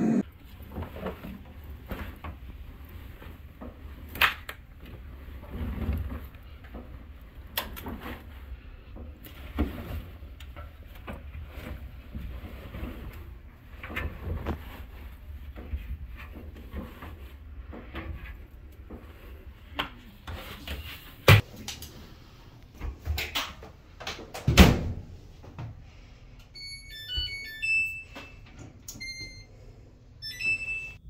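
Background music, with scattered thumps of clothes and a door being handled as a dryer is loaded. Near the end, a string of short electronic beeps at several pitches comes from a Samsung dryer's control panel as its buttons are pressed to set the cycle.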